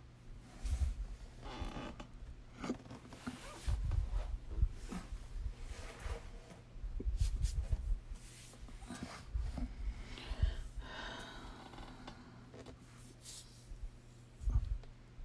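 Handling noise at a desk: irregular soft low thumps and brief rustling scrapes, with a few small clicks, over a steady low hum.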